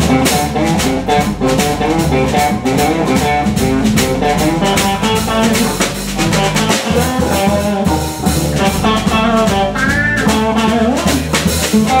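Live blues band playing instrumental blues: electric guitar lines over bass guitar and a drum kit with steady cymbal and snare strokes. A note bends upward about ten seconds in.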